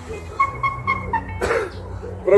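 A man coughs once, about one and a half seconds in. Before the cough there is a string of four or five short, evenly spaced high-pitched chirps.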